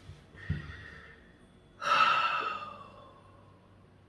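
A man's breathy exhale, like a gasp or sigh, about two seconds in, fading over about a second. A soft thump comes just before it.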